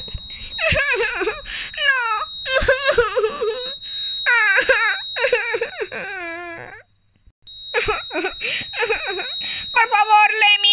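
A child's high-pitched voice wailing and sobbing in a string of falling cries, acting out grief. A thin, steady high-pitched tone runs under it at the start and again near the end, and the sound cuts out for a moment about seven seconds in.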